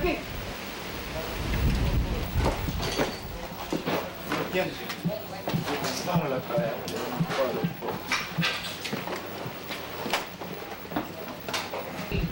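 Scattered sharp cracks and knocks throughout, with muffled men's voices and a low rumble about two seconds in.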